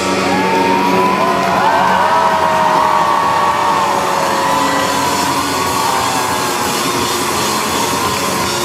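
Live pop-rock band playing loud in a concert hall, with electric guitar and keyboards, and the crowd cheering and whooping over the music. Long gliding tones rise and fall through it.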